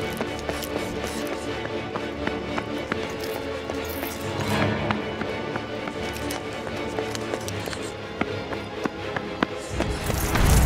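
Tense film score of sustained, droning tones, with quick footsteps running on asphalt heard as scattered sharp taps.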